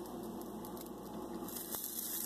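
Pancake batter frying in a pan, a faint steady sizzle, with one light tick near the end.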